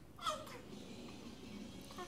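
A nine-month-old baby's short, high-pitched squeal that falls in pitch, about a quarter second in, followed by quiet room noise.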